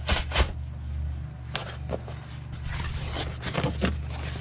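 A sheet of corrugated cardboard laid over worm bin bedding and pressed flat by hand: a burst of rustling at the start, then a few brief scrapes and rustles, over a steady low hum.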